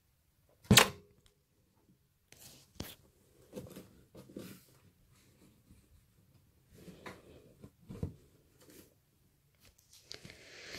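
A single sharp knock about a second in, then faint, scattered rustles and small clicks.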